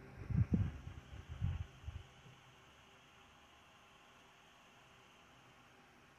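A few soft, irregular low bumps and rumbles in the first two seconds, like movement against the bedding or the microphone, then a faint steady hiss of room tone.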